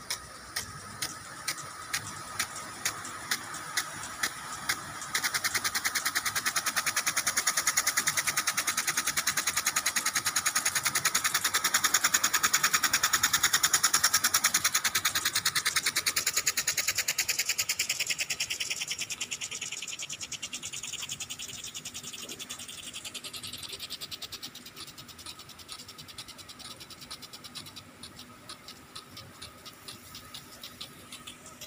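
Impact sprinklers watering turf: the spray hisses while the sprinkler arm ticks, slow ticks about two a second at first. About five seconds in, a rapid run of ticks takes over, grows louder, and fades after about twenty seconds.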